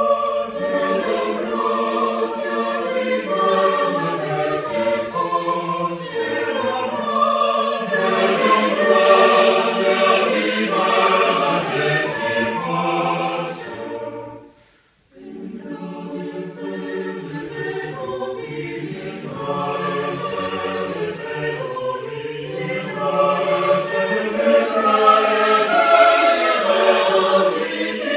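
Mixed choir of women's and men's voices singing a cappella in several parts, with a brief full stop about halfway through before the voices come back in.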